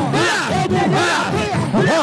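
A large congregation shouting and crying out together, many voices overlapping in rising and falling cries with no break.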